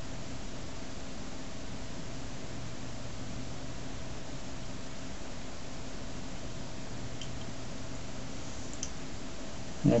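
A steady low hum with a few faint clicks about seven and nine seconds in.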